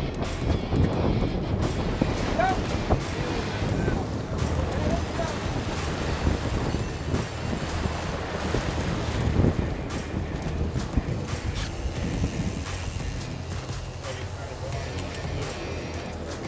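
Wind buffeting the microphone over the steady rush of water along a sportfishing boat's hull, with the boat's engines running low underneath.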